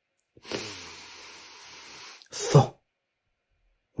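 A man's long hissing breath, lasting about two seconds, followed by a short, sharp vocal burst.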